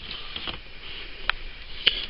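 A laptop's optical disc drive being handled and slid into its bay: three light clicks over a quiet hiss.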